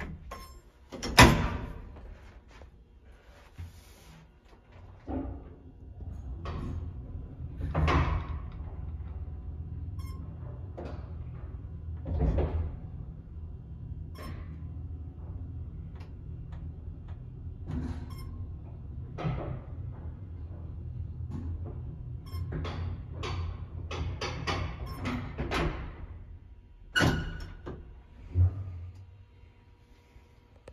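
Vintage Otis AC geared traction elevator on a run between floors. A loud clack about a second in, then a steady low hum for roughly twenty seconds while the car travels, with scattered clunks and clicks. A cluster of clunks follows, and a sharp clatter near the end, fitting the car stopping and the collapsible metal gate being worked.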